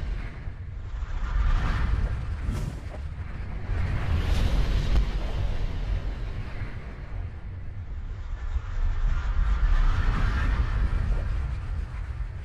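Cinematic outro sound effects: a deep rumbling bed that rises and falls in three slow swells, with brief whooshes near the start, fading away at the end.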